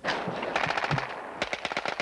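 Automatic weapon fire: two rapid bursts of shots at roughly a dozen rounds a second, the first starting about half a second in and the second about a second and a half in.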